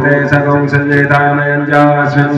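Men chanting Sanskrit Vedic mantras in a steady, drawn-out recitation, the voice held on long sustained notes.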